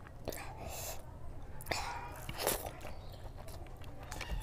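Close-miked chewing of a mouthful of rice and curry: wet mouth and chewing sounds, with a few louder moments about half a second, under two and about two and a half seconds in.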